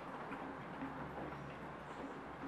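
Low, steady background noise with no distinct event.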